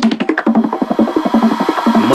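Drum and bass track at a break: the heavy bass drops out and a rapid drum fill of fast snare and percussion hits plays.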